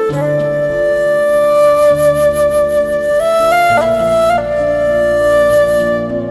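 Background music: a slow melody of long held notes over lower sustained accompaniment, stepping up to higher notes about halfway through.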